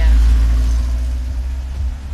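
Low rumble of a car heard from inside its cabin while it drives, loudest at the start and easing off over the two seconds.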